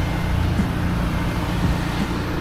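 Engine of a pressure-washing rig running steadily, a low even drone.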